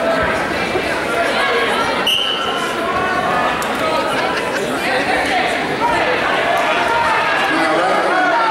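Spectators' voices talking over one another in a large gymnasium, with a short high whistle blast about two seconds in: the referee's whistle starting the wrestling match.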